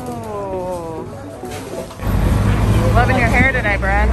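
Background music for about the first two seconds, then busy city-street noise cuts in with a steady low rumble and a high voice whose pitch wavers quickly.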